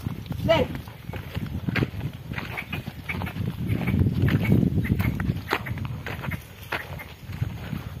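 Pair of bullocks pulling a wooden hoe through soil: a low, continuous rumble with clatter and knocks from the implement and hooves. A man gives a short call to the bullocks about half a second in.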